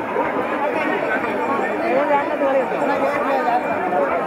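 A large crowd of spectators talking at once, many voices overlapping in a steady chatter.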